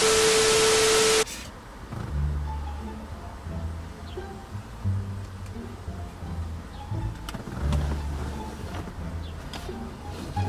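A burst of TV static with a steady beep tone for about a second, a glitch transition effect, then background music carried by a deep bass line with notes changing about every second.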